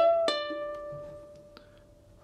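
A single guitar note on a nylon-string guitar, hammered on from the 15th to the 17th fret of the B string and pulled off back to the 15th about a third of a second later. The lower note then rings and fades away over about a second and a half, with a faint click near the end.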